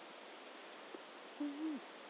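Steady faint hiss of open-air background noise. About a second and a half in, a person's voice gives one short, low hum that holds its pitch and then falls away.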